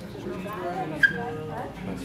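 Background voices talking in a shop, with one brief, sharp high-pitched sound about a second in.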